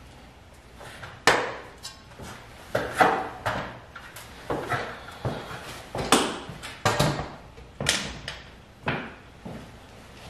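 Galvanized sheet-metal duct pieces being handled, giving a dozen or more sharp clanks and knocks at an uneven pace. The loudest come about a second in, at about three seconds and at about six seconds.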